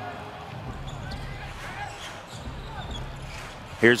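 A basketball dribbled on a hardwood court, under a low, steady wash of arena crowd noise.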